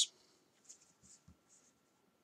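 Faint, brief scratches and rustles of a pencil and a plastic ruler moving on drawing paper, a few short strokes about a second apart.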